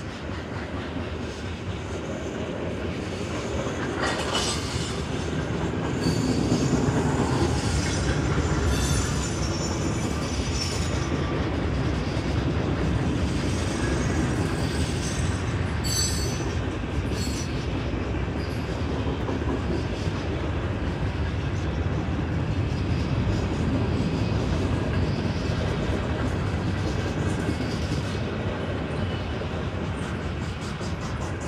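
CSX freight train's covered hopper cars rolling past at a grade crossing: a steady rumble of steel wheels on the rails with rail-joint clicks and some high wheel squeal, loudest a few seconds in.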